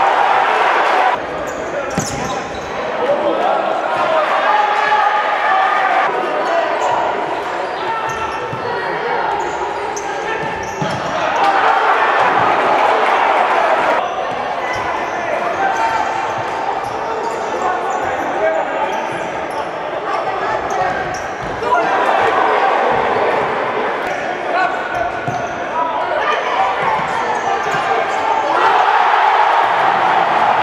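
Futsal match sound in a large indoor hall: the ball thudding off feet and the wooden court, with players' shouts and crowd voices throughout. The crowd grows louder near the end, at the goal.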